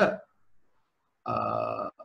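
A man's voice: the end of a spoken word right at the start, then after a pause a held, level-pitched hesitation sound (a drawn-out "ehh") lasting about half a second.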